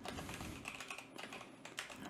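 Typing on a computer keyboard: a quick, fairly quiet run of keystrokes.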